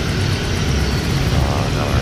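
Steady low rumble of city street traffic, with a voice heard briefly near the end.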